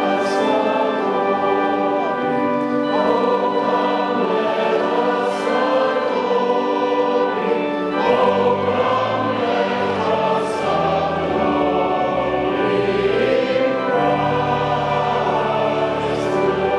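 Church choir singing a hymn with organ accompaniment, the sustained chords and voices continuing without a break.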